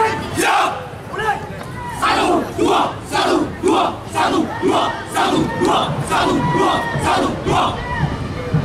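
A squad of drill cadets shouting together in a fast, rhythmic unison chant of short shouts, about three a second.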